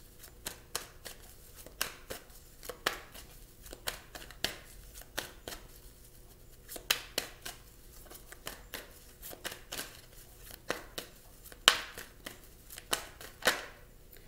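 Tarot deck being shuffled by hand: irregular soft snaps and slaps of cards, a few a second, with one sharper snap near the end.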